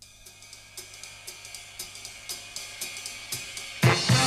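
A jazz drummer's ride cymbal opening a big-band swing number: a steady beat of about four strokes a second with light drum hits, slowly growing louder. Near the end the full big band comes in loudly, saxophones to the fore.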